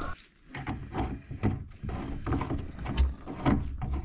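Irregular light clicks and knocks of hands handling hose fittings and hardware, over a low rumble.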